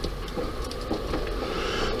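Steady low rumble of a car's engine and tyres heard inside the cabin while driving, with a few faint ticks.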